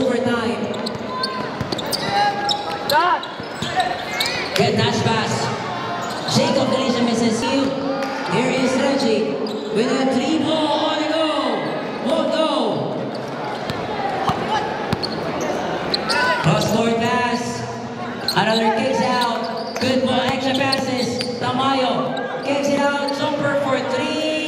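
Basketball bouncing on the court during live play, mixed with a crowd's voices and shouts in a large, echoing gymnasium.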